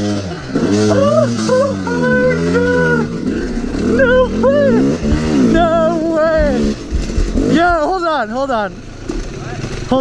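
Yamaha YZ250 two-stroke dirt bike engines revving up and down as the riders go on and off the throttle, at times two bikes at once, easing off near the end.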